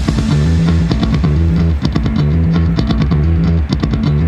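Rock background music with guitar, bass and drums, keeping a steady beat.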